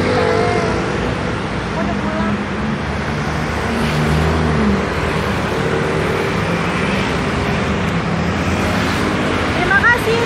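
Steady road traffic noise along a city street, with indistinct voices mixed in.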